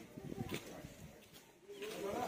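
Quiet cooing of a pigeon.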